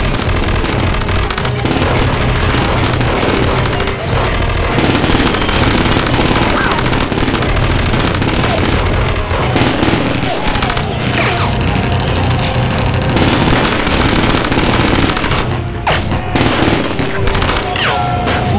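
Sustained, dense gunfire from rifles and pistols in an action-film gunfight, continuous and loud throughout, mixed with a music score.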